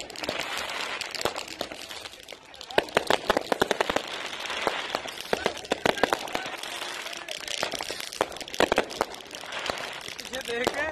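Aerial fireworks bursting overhead: a steady run of sharp bangs and crackles, thickest about three seconds in, again around five to six seconds and near the end.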